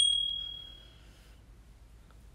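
A single bright bell ding, struck once, ringing at one clear high pitch and fading away over about a second.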